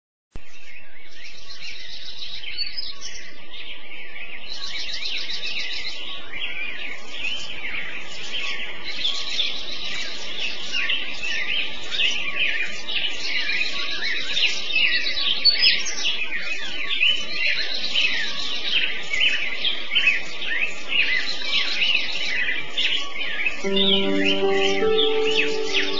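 Many small birds chirping and singing at once, a dense, steady chorus of short high calls and trills, starting about half a second in.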